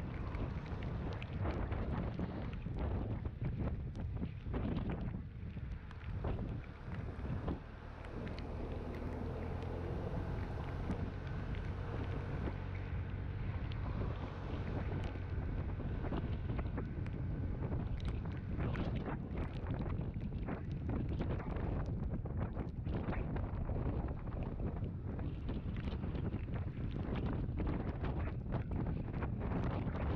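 Motor scooter riding on wet roads: a low engine drone under gusty wind rumble on the microphone. For a few seconds about a third of the way in, a steadier, more clearly pitched engine hum comes through.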